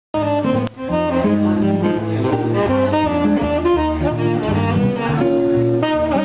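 Live jazz from a trio: upright double bass and guitar playing with a saxophone. The music cuts in abruptly, mid-tune, at the start.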